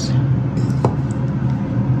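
Steady hum of a Sur La Table air fryer's fan running while it preheats, with one light click of the plastic burger press being handled just under a second in.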